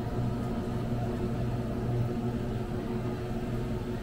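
Steady low hum of supermarket refrigerated display cases and ventilation: one even droning tone with overtones over a soft hiss, with no sudden sounds.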